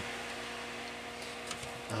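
A steady electrical hum of a few thin, even tones with a faint hiss under it, and no other events.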